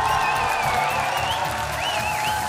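Studio audience and judges applauding over background music with a long held note and a steady beat.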